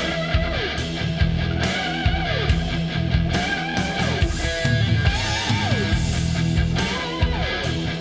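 Fuzz-driven electric guitar, played through a Dophix Nettuno fuzz pedal, plays a lead phrase over bass and drums. The phrase is repeated every couple of seconds: a held, wavering note that slides steeply down, each time starting a little higher.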